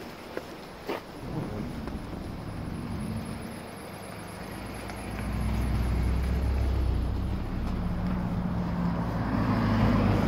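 A motor vehicle's engine running close by, a low steady hum that grows louder about halfway through, with two short clicks in the first second.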